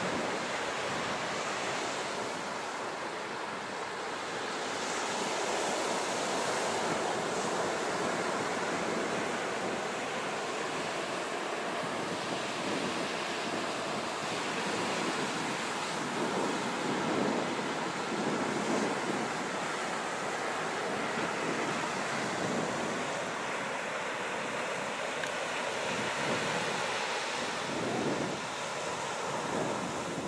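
Ocean surf breaking and washing up a sandy beach: a steady rushing that slowly swells and eases.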